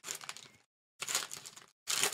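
Foil trading card pack being torn open by hand: the foil wrapper crinkles and crackles in bursts, with a short pause of silence just over half a second in.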